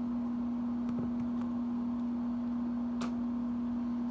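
A steady low hum at one unchanging pitch, with a faint click about three seconds in.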